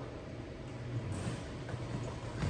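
Faint steady low hum of room tone, with no distinct ball bounces or impacts.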